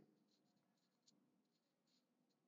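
Near silence, with a faint click of a computer mouse about a second in.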